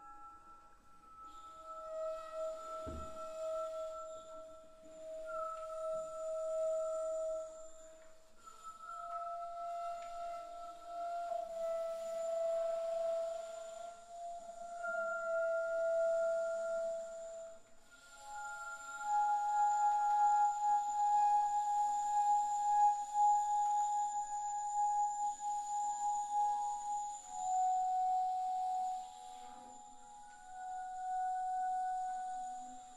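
Bass flute playing long, held notes with audible breath, layered with live electronics so that several sustained tones overlap; the notes step from one pitch to the next, and the sound grows louder about two-thirds of the way through.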